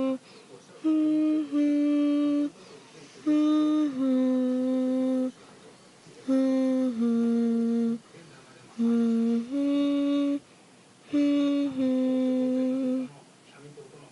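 A person humming a slow, simple lullaby: five two-note phrases with short pauses between them, each note held steady.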